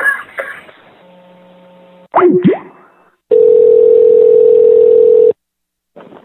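Telephone line ringing tone: one loud, steady ring about two seconds long that cuts off, heard as the call connects before it is answered. It follows a brief sweeping sound that slides up and down in pitch.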